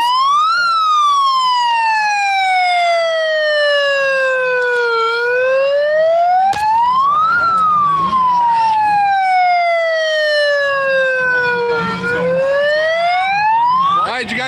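Handheld megaphone's siren, wailing at full volume very close by. Its pitch climbs for about two seconds and sinks slowly for about four and a half, twice over, and starts climbing again near the end.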